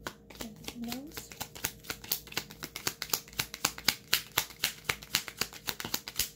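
Deck of oracle cards being shuffled by hand, the cards slapping together in a quick run of clicks about five times a second. A short hum of a voice comes about half a second in.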